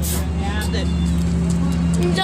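Faint background voices over a steady low mechanical hum, with a single sharp click at the very start.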